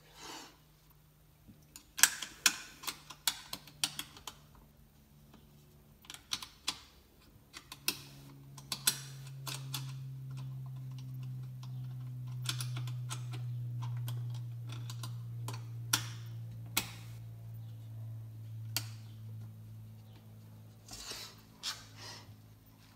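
Sharp, irregular clicks and taps of small metal parts on a Mossberg 535 pump shotgun as the shell stop is fitted back into the receiver by hand. A low steady hum comes in about eight seconds in.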